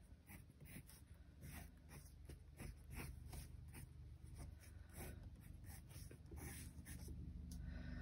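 Colored pencil shading lightly on sketchbook paper: faint, quick, irregular scratching strokes.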